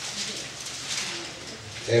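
Bible pages being turned, a soft, uneven rustle of paper. A man's voice starts right at the end.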